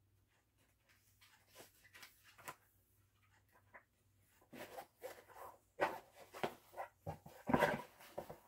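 Pages of a hardback book being turned and handled: soft paper rustles and brief flicks, sparse at first, then more frequent and louder in the second half.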